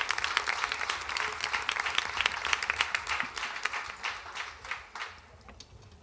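Audience applause, thinning out and dying away about five seconds in.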